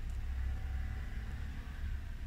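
A steady low background rumble with a faint hiss above it, and no distinct events.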